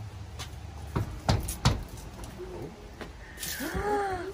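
A child's knuckles knocking on a front door, a few separate knocks in the first two seconds. Near the end a woman gasps in delight.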